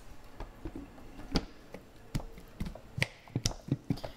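A run of irregular sharp plastic clicks and knocks, with the loudest about a second and a half in and again near three seconds, as the Vitamix blender's lid is handled and fitted onto the container.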